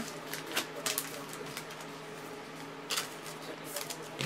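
Trading cards and foil card-pack wrappers being handled on a tabletop: a few short clicks and rustles, the sharpest near the start and about three seconds in, over a faint steady hum.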